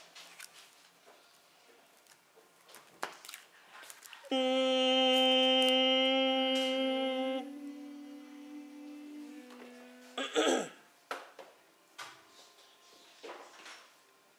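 A voice holding a long hummed "mmm", the sound of the phonogram M, for about three seconds. A quieter, slightly lower hum carries on until about ten seconds in and is followed by a brief wavering vocal squeak. Faint pencil taps on paper can be heard around it.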